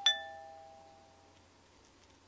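A two-note 'ding-dong' chime of the doorbell kind: its lower second note strikes right at the start and rings out with the first, fading away over about a second and a half.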